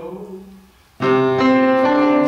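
A held sung note trails away, then about halfway through a piano comes in loudly with chords, changing notes every half second or so.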